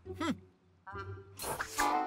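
Cartoon soundtrack: a short hummed "hmm", then a brief falling musical sting. About one and a half seconds in comes a splashy, whooshing sound effect of blobs of pudding flying through the room.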